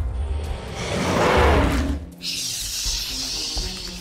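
A dinosaur roar sound effect over dramatic background music. The roar is loudest between about one and two seconds in, and a long high hissing breath follows it.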